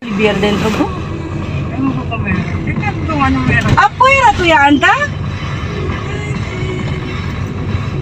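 Car cabin noise from riding in a moving car: a steady low engine and road rumble. A person's voice rises and falls loudly about four seconds in.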